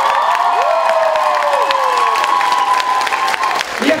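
A live audience applauding and cheering, with long drawn-out cries from the crowd that die away about three and a half seconds in.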